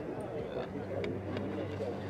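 Faint, indistinct voices over a steady low hum, with a few light clicks.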